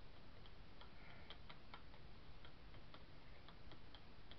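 Faint, irregular light clicks and taps of small items being handled on a craft desk.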